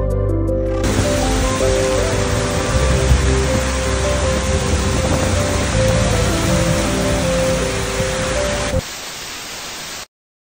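Heavy rain falling, a dense steady hiss, under background music with long held notes. The music drops out near the end, leaving the rain alone and quieter.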